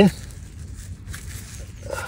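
A gloved hand breaking up a clump of damp lawn soil: faint crumbling and rustling, with a few soft clicks.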